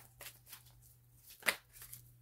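A deck of tarot cards being shuffled by hand: a series of short, crisp card snaps, the loudest about one and a half seconds in.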